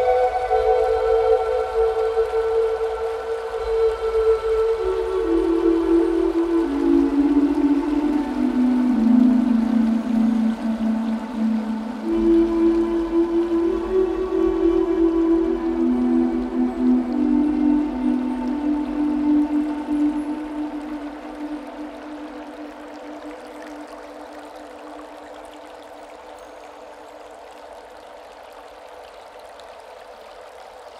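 Slow Native American flute melody of long held notes, gliding down then rising and falling again, fading out about two-thirds of the way through. A steady wash of running water continues underneath and is left alone after the flute fades.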